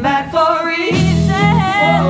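Pop-rock band playing with a voice singing. The bass and low instruments drop out at the start, leaving the singing nearly alone, then come back in about a second in.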